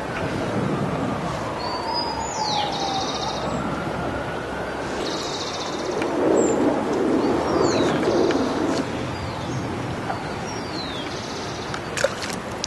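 Outdoor ambience with birds calling: short, high, falling chirps repeated every second or two, alternating with brief buzzy trills. A low rumble swells up between about six and nine seconds in.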